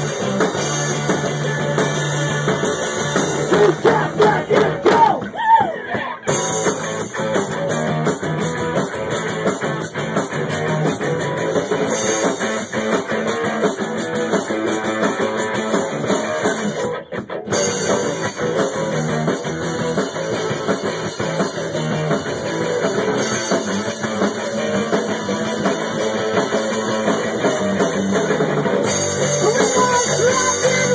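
Live rock band playing: electric guitar, bass and drum kit. There are stop-start hits a few seconds in and a short break a little past halfway before the band carries on.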